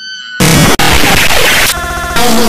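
Heavily distorted, clipped cartoon audio. A brief high squeaky tone is followed about half a second in by a loud, harsh blast of noise, which turns into a buzzy, stuttering tone near the end.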